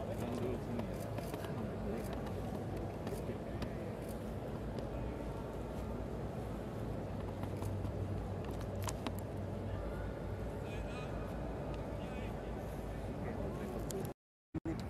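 Open-stadium ambience: indistinct voices of people around the pitch over a steady low hum, broken by a few sharp clicks or knocks.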